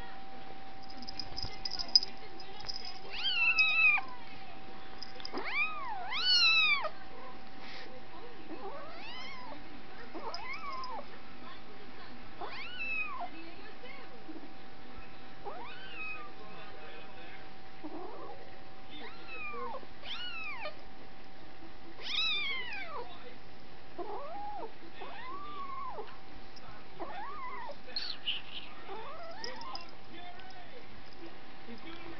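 Cat meowing repeatedly: short rising-and-falling meows every second or two, the loudest ones in the first several seconds. A faint steady high hum runs underneath.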